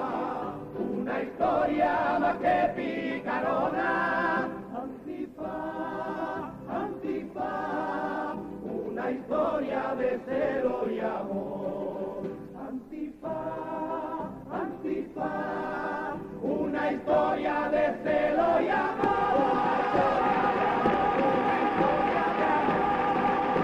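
A Cádiz carnival comparsa, an all-male chorus, singing in parts, with long held notes in the last few seconds.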